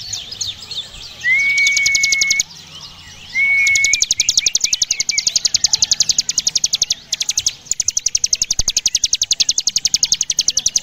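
A ciblek gunung (prinia) singing its 'ngebren' song: long runs of rapid, dry, even trilling pulses, about a dozen a second. The runs are twice broken by a level, high whistle held for about a second, once about a second in and once near the fourth second.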